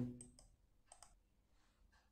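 Near silence, broken by a few faint, short clicks: two in quick succession just after the start and two more about a second in.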